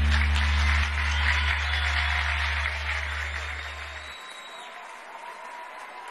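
Audience applause over a long held low musical note at the close of a piece; the low note cuts off about four seconds in and the applause fades away.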